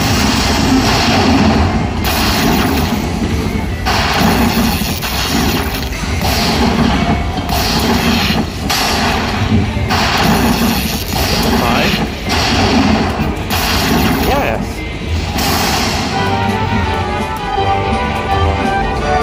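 Aristocrat Dollar Storm slot machine playing its win-celebration sounds: crashing bursts about once a second over its music, giving way near the end to a run of chiming notes as the win counts up.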